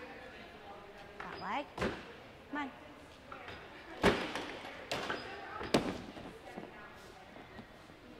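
A few sharp thuds of gymnasts landing on apparatus in a gym, about two seconds in and again twice later. The loudest comes about four seconds in, and faint voices carry in the background.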